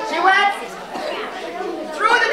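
Children's voices chattering over one another, high-pitched and too mixed to make out words.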